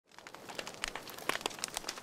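Crackling fire: irregular small snaps and pops that grow a little louder.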